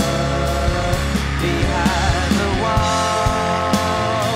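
Rock band playing live: drum kit, electric guitars, bass and piano together, with long held notes that waver in pitch over the beat.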